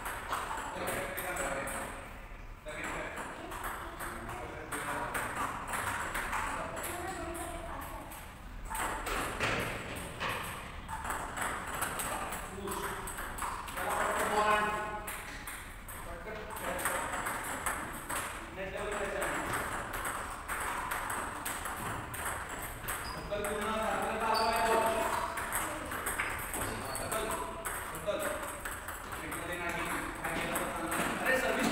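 Table tennis balls being struck back and forth in rallies on more than one table: a continuous run of sharp clicks of ball on bat and table, overlapping.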